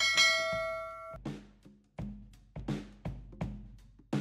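A click on the bell icon sets off a bright notification-bell chime that rings for about a second. It is followed by a few short percussive music hits, about half a second apart, each fading quickly.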